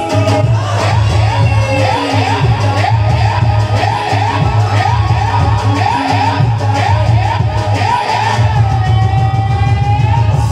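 Live qawwali music: singing with harmonium over a steady beat. A rapid run of quick repeated notes settles into one long held note near the end.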